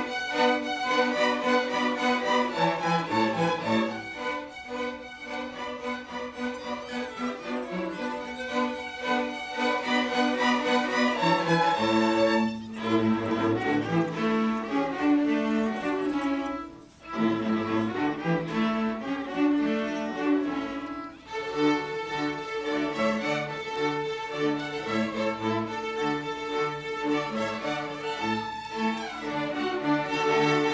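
Background music played by bowed string instruments: a violin-like melody over a lower cello line, with a couple of brief breaks in the phrasing.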